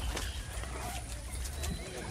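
Wind rumbling low on the microphone, with faint steps and handling noise as the camera is carried along.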